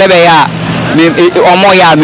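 A person talking, the words not transcribed, with road traffic passing behind.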